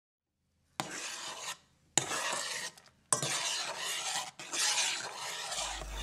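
Rasping, scraping noise in four separate stretches, each starting abruptly, the last and longest running for about a second and a half.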